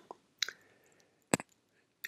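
Near silence in a pause of a voice-over, broken by a few faint short clicks, the loudest a little past the middle.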